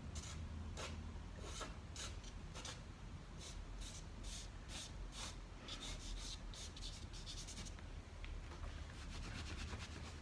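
A Unison Colour soft pastel stick scratching in short, quick strokes across UART sanded pastel paper, a few strokes a second and faint, as a new tone of red is laid over earlier layers on a drawn apple.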